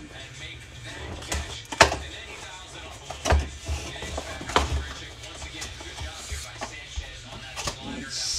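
A cardboard trading-card hobby box handled and opened by hand, with the lid flap pulled open: a few sharp taps and scrapes, the loudest about two seconds in and others near three and a half, four and a half, and eight seconds, over a low steady hum.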